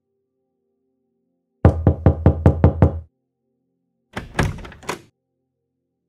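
A quick series of about eight knocks on a wooden door. About four seconds in comes a short click and rattle as the door handle is worked.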